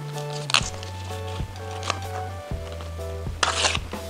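Background music with steady held bass notes, over which a banana leaf is torn into a strip for tying: a short rip about half a second in and a longer one near the end.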